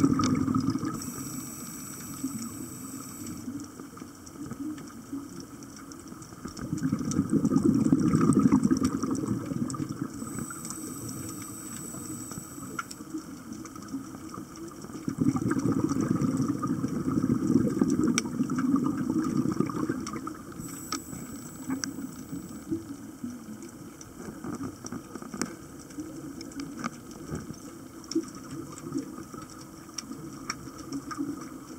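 Scuba diver breathing underwater through a regulator: three short hissing inhales, each followed by a long bubbling exhale, repeating about every ten seconds.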